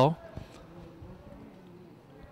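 The end of a commentator's word right at the start, then faint open-air stadium ambience with a faint wavering hum.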